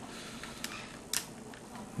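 Two faint clicks about half a second apart, from hands handling a plastic collectible action figure, over low room hiss.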